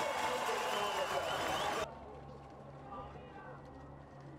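Spectators at a ski race finish area cheering and shouting. It cuts off suddenly a little under two seconds in, leaving a quieter background with a steady low hum and faint voices.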